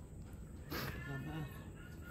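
A young child whimpering softly while crying: one faint, high, wavering sob lasting about a second, starting just under a second in.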